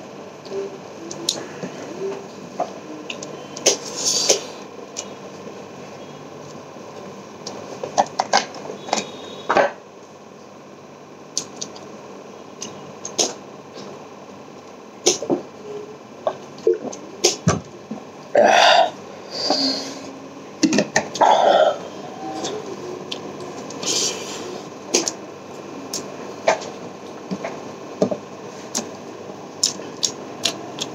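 Close-up eating sounds of a person eating rice and vegetable curry by hand: scattered wet chewing clicks and lip smacks. A few longer, louder mouth sounds come a little past the middle, over a steady background hiss.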